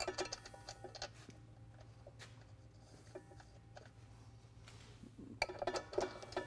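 Faint, irregular metallic clicks and clinks of a nut being threaded by hand onto the hub of a planter's seed-opener disc blade, over a steady low hum.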